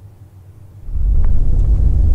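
Faint low room hum, then about a second in an abrupt switch to the loud low rumble of a Mercedes-Benz car being driven, heard from inside the cabin.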